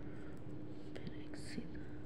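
A woman whispering briefly under her breath about a second in, over a steady low hum.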